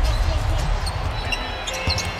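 A basketball being dribbled on a hardwood court, with short high sneaker squeaks, over a steady low arena background.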